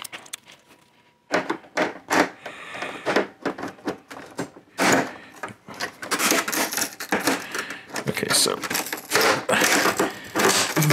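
Clicks, snaps and scrapes of thin plastic from a Canon Pixma MG2520 printer's top frame around the scanner glass being pried and worked loose by hand. A dense run of clicks and knocks starts about a second in and gets busier toward the end.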